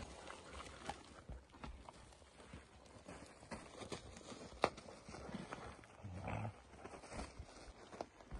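Detection dogs digging and scrabbling with their paws in dry, stony soil: faint, irregular scuffs and scrapes, with one sharp click a little past the middle.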